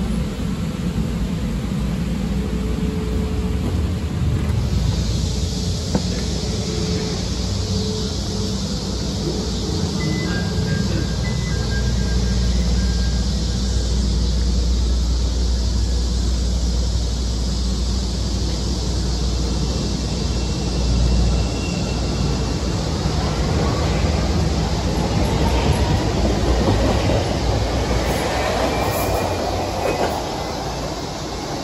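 Chicago 'L' 5000-series rapid-transit train standing at a station platform with a steady rumble and hum, then moving off, its wheel and motor noise rising over the last few seconds.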